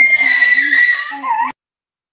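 A person's voice coming through a video call, garbled and carrying a steady high whistle. It cuts off abruptly about one and a half seconds in.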